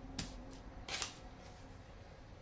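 Paper being handled in the hands: two brief, quiet rustles, one just after the start and one about a second in, from a small printed pamphlet being turned over.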